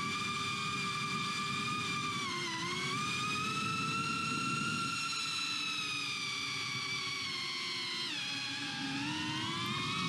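GEPRC CineLog35 V2 ducted 3.5-inch cinewhoop's motors and propellers whining steadily in flight, recorded by its own onboard camera. The pitch dips about two and a half seconds in, falls again around eight seconds, then climbs near the end.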